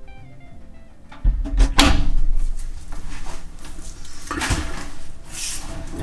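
Music plays while bumps and rustling come from clothes being pushed into a clothes dryer drum right next to the microphone, with a heavy low thump about a second in.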